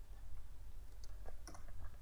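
A few faint clicks of a computer mouse and keyboard over a low steady hum.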